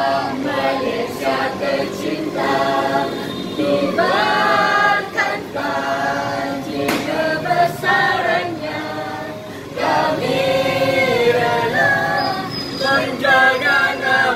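A small group of men and women singing a song together in chorus, loud and continuous, with the melody moving through short phrases.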